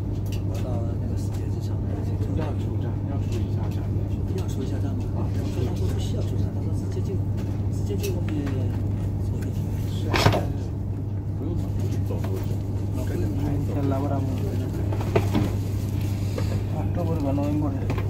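Steady low hum and rumble of a moving passenger vehicle heard from inside the cabin, with passengers talking faintly in the background. A single sharp knock stands out about ten seconds in.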